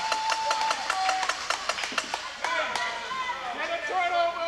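Wheelchair rugby play on a gym floor: a rapid clatter of knocks and clicks from the chairs and ball, with players' shouts and calls over it.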